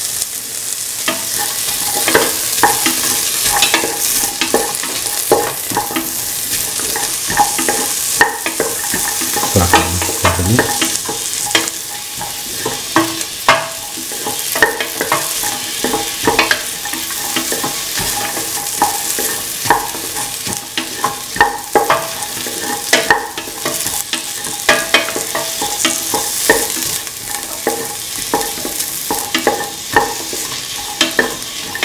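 Chopped carrot, onion, garlic and ginger sizzling in hot oil in a stainless steel pan, with a metal spoon scraping and clinking against the pan as the vegetables are stirred. The hiss of the frying is steady and the spoon clicks come often and irregularly.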